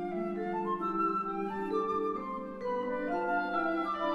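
Symphony orchestra playing a concerto passage: woodwinds carry a moving line of short notes over a held low note.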